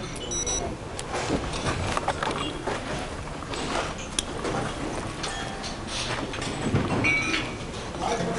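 Restaurant ambience: a murmur of voices with scattered clinks and clatter of crockery and cutlery, some clinks ringing briefly.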